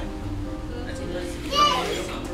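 Children's voices and chatter with music behind, over a steady low hum. A short high-pitched call, the loudest sound, rings out about one and a half seconds in.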